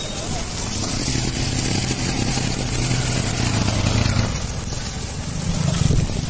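Motorcycle engine running while riding down a wet road, over a steady hiss of tyres and rain; the engine hum steps higher and louder near the end as it speeds up.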